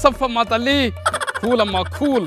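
A man singing with a wavering, sliding voice over a music backing with a steady bass; a short rattling, noisy burst comes about a second in.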